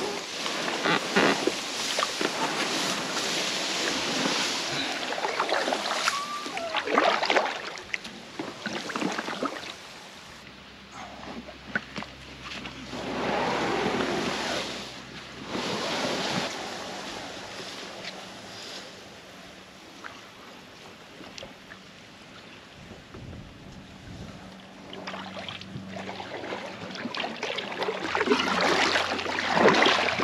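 Water splashing and swishing as Alpacka Caribou packrafts are pushed off through riverbank reeds and paddled in shallow river water. The noise comes and goes in irregular swells, with some wind on the microphone.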